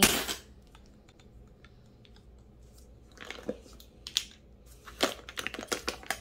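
Plastic lipstick tubes clicking and clattering against one another as hands pick through a basketful of them, with a scatter of sharp clicks in the second half.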